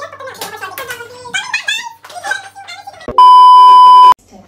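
Women's voices talking, then a little over three seconds in a loud, steady high beep cuts in and holds for about a second: a TV test-pattern tone laid over colour bars in the edit.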